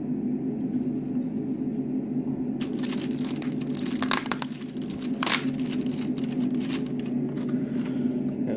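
Handling of a cardboard chocolate advent calendar: short rustles and crinkles of card and foil wrapping about three, four and five seconds in, over a steady low hum.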